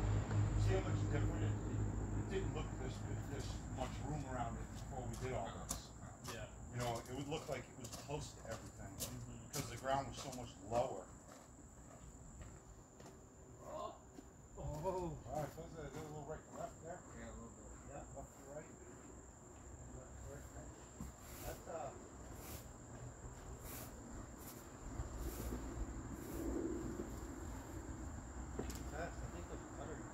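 A steady high-pitched insect trill under distant voices, with scattered sharp knocks. A low rumble fades out in the first two seconds and comes back near the end.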